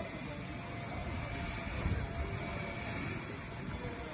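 Steady outdoor background noise with irregular low rumbling, typical of wind buffeting the microphone.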